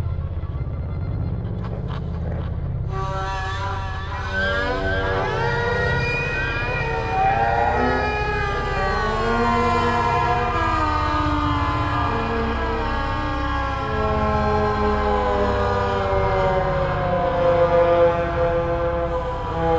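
Electronic film score of processed and synthesized sounds: a low drone, joined about three seconds in by many layered tones that slide up and down in pitch like distant sirens.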